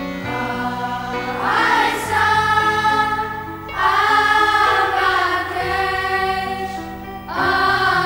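Boys' choir singing over instrumental accompaniment; the voices come in about one and a half seconds in and swell in three phrases.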